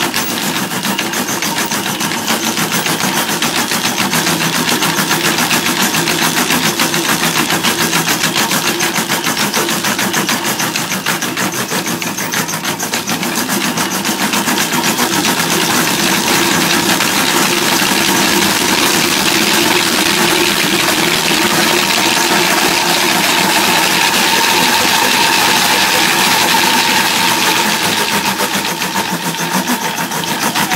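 Non-motorised wooden-slat dog treadmill clattering in a fast, continuous rattle as a Staffordshire Bull Terrier runs on it.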